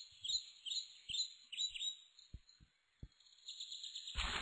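Songbird chirping, faint: short, high chirps that fall in pitch, repeating about twice a second.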